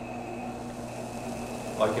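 Van de Graaff generator running while charging a person through its sphere: a steady motor-and-belt hum with a faint high whine.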